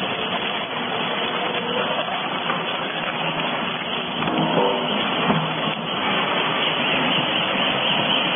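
Dual-shaft cardboard shredder running, its intermeshing cutter discs tearing through cardboard with a steady, dense noise that swells briefly about five seconds in.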